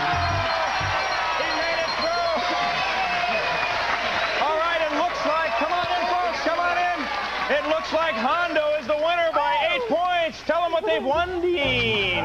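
Upbeat background music with excited voices shouting over it. The shouting grows busier and choppier from about halfway through.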